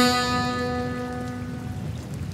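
The last note of a plucked string instrument ringing out and slowly fading at the end of a song, over a light patter of rain.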